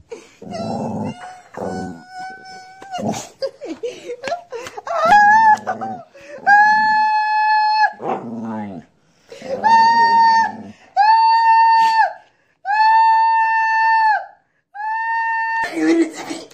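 A dog howling in a run of long, level-pitched notes, each lasting about a second with short breaks between, starting about six seconds in. Before that, a person's voice wails and yells.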